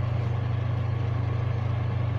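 A steady low hum that runs without change under everything, with a faint hiss above it.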